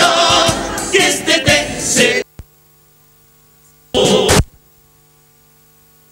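Comparsa choir singing, cut off abruptly about two seconds in. What is left is a steady electrical mains hum from the recording, broken by a half-second burst of the same singing around four seconds in.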